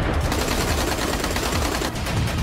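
Rapid automatic gunfire: a fast run of closely packed rifle shots.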